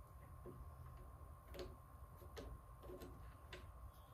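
Near silence with a few faint, irregular ticks from a hand screwdriver driving small M6 screws into a metal plate, over a faint steady hum.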